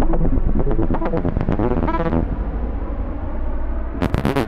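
Electronic synthesizer music: pitched synth tones and pulses over a deep, steady low drone. About two seconds in the high end fades away, leaving mostly the low drone.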